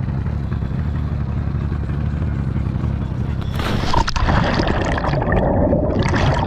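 A boat motor idling with a steady low hum; about three and a half seconds in, a loud splash as a scuba diver drops into the water, followed by rushing, bubbling underwater noise.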